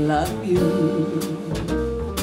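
Live jazz quartet playing between sung lines: electric piano, plucked double bass walking under it, and drums with cymbal strokes.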